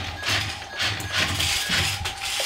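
Small electric motors and plastic gears of a remote-control toy excavator and dump truck whirring in short runs as the toys are driven across a wooden floor.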